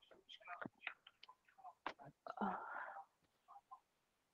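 Faint, whisper-like voices with a short spoken "uh" about two and a half seconds in, the loudest moment.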